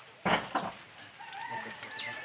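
A rooster crowing in the second half, one drawn-out call. It follows a short, loud noisy burst near the start.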